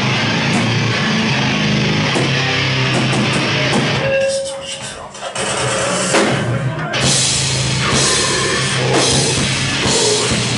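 Heavy metal band playing live: distorted guitars, bass and drum kit. About four seconds in the band stops short, hits a few separate staccato accents, then crashes back in at full volume about seven seconds in.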